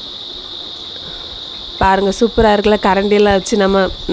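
Steady, high-pitched chirring of an insect chorus. A person starts talking about halfway through.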